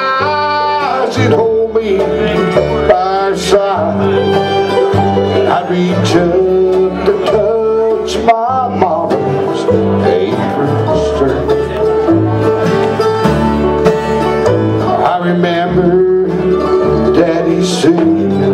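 Live bluegrass band playing a song: strummed acoustic guitar, fiddle, banjo, mandolin and upright bass, with a man singing lead over a steady bass beat.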